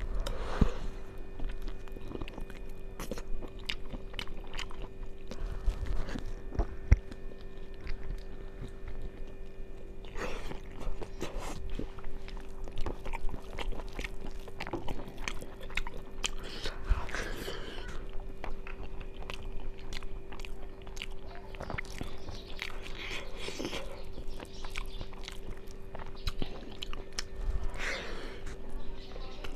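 Close-miked chewing and mouth sounds of a person eating rice and egg by hand, heard as many short wet clicks throughout.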